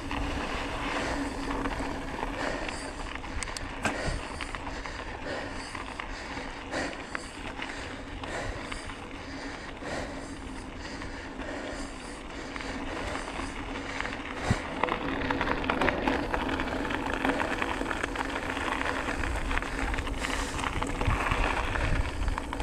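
Bicycle tyres rolling over a gravel dirt road, with wind on the camera microphone, a few sharp knocks over bumps and a steady low hum underneath.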